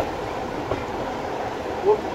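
Railway passenger coach running along the line, heard from a carriage window: a steady rumble of the wheels on the track, with a single sharp click about two-thirds of a second in.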